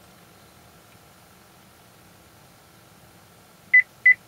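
Near-silent car cabin with a faint hum, then near the end one short, high beep from the vehicle's chime. It is the acoustic signal that the key fob remote has been learned in remote-programming mode.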